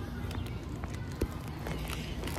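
Steady low rumble of wind and handling on a handheld phone's microphone, with a few faint clicks, one a little louder just past the middle.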